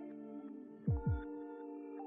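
Ambient background music: sustained synth chords with deep booming beats that drop in pitch, a heartbeat-like double beat about a second in.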